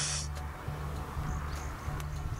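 Quiet open-air ambience: a steady low rumble with a few faint, short high chirps of birds in the second half.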